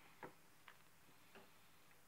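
Faint, irregular ticks of a pen on paper during handwriting, three small clicks in otherwise near silence.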